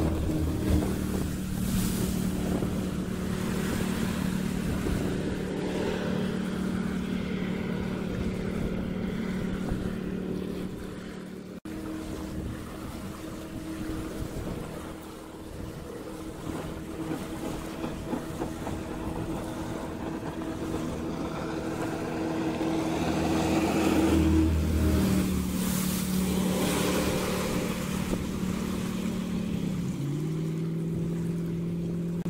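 Jetboat running on the river: a steady pitched hum from its Berkeley jet drive and engine over the rush of water and wind. There is a short break about a dozen seconds in, and the sound grows louder about three-quarters of the way through.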